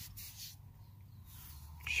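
Quiet outdoor background in a pause between words: a faint hiss with a couple of soft rustles and a low hum, with no distinct event.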